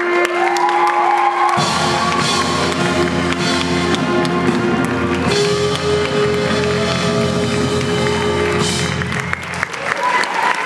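Jazz big band with saxophones and brass playing the closing bars of a tune, a held chord over busy drums with cymbal crashes, as the audience applauds.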